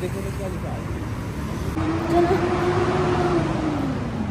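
A road vehicle passing close by. Its engine hum and tyre noise swell about halfway through, then fade near the end, over steady street traffic.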